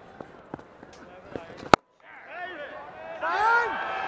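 Quiet background audio of a televised cricket match with a few faint knocks, broken by a sharp click and a split second of dead silence at an edit cut about 1.7 seconds in; after the cut, voices come in and grow louder from about 3 seconds.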